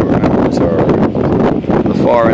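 Strong wind buffeting the microphone, a loud, uneven rumble with gusts.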